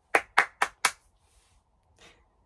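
A person clapping their hands four times in quick succession, about four claps a second, all within the first second.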